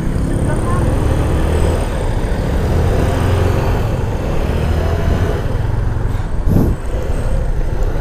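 Motorcycle engine running at low speed under steady wind rumble on the camera's microphone, with a brief burst of noise about six and a half seconds in.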